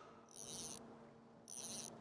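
Fly reel ratcheting in two short, high-pitched bursts of about half a second each, as the reel is worked by hand.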